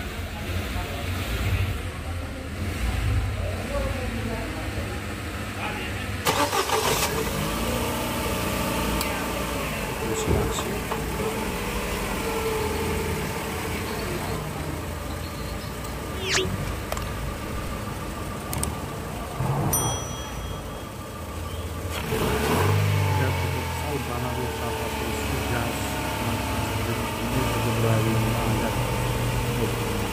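Daewoo Nexia 1.6 16-valve E-TEC four-cylinder engine running with the bonnet open, a steady low engine note throughout. There are sharp louder noises about six seconds in and again about twenty-two seconds in.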